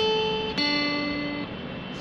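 Acoustic guitar picking two single notes of a slow melody, one after the other. The second note is lower and rings for about a second before fading.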